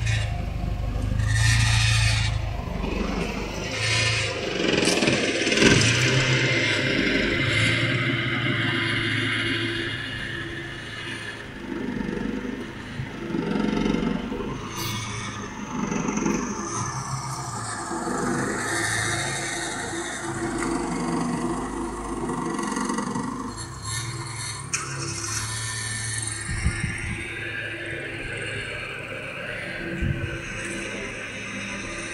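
A Toyota sedan's engine running at low speed as the car creeps slowly forward, under irregular low rumbling and hiss, with a few light clicks.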